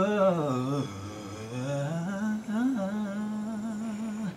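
A man singing a vocal run for listeners to match: a quick melismatic riff that winds downward in pitch, then climbs back and settles on a long held note with a light vibrato.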